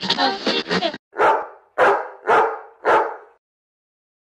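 Intro music ends about a second in, followed by four short, loud barks from a dog, roughly half a second apart.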